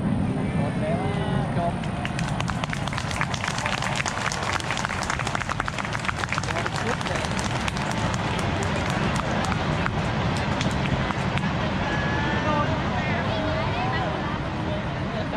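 Spectators talking and murmuring, with a dense run of small crackles and pops from about three to eleven seconds in from ground-level firework fountains.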